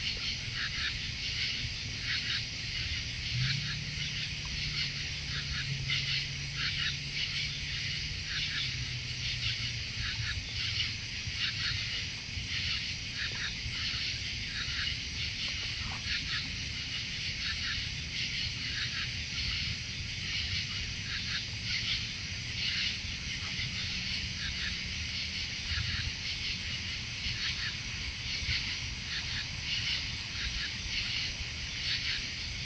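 A steady chorus of night insects, a dense high chirring made of many rapid short pulses, over a low steady hum.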